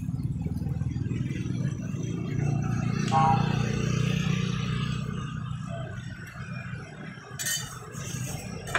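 A low motor hum that swells about three seconds in and then eases off, with a brief light pitched sound at its loudest point.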